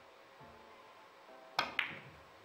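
A three-cushion billiards shot: a sharp click of the cue tip striking the cue ball about a second and a half in, then a second click about a fifth of a second later as the balls collide.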